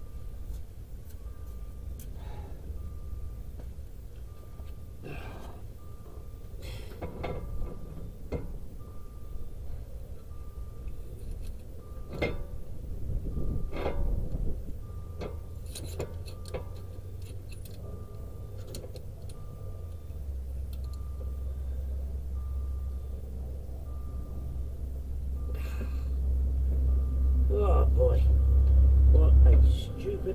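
Metal tools clinking and knocking on a disc-brake caliper. Behind it the car sounds a steady, repeating warning beep with its ignition on. A low hum swells over the last ten seconds and cuts off suddenly just before the end.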